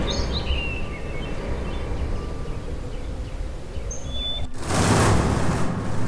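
Birds chirping sparsely over a low, steady rumble of background ambience, with a brief rush of noise about four and a half seconds in.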